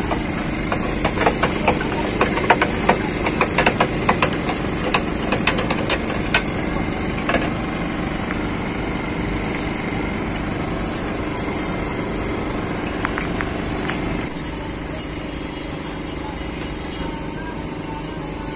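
Hand-cranked spiral potato cutter clicking and rattling on a steel counter as a potato on a skewer is turned through its blade, the clicks thinning out about seven seconds in. A steady hum runs underneath.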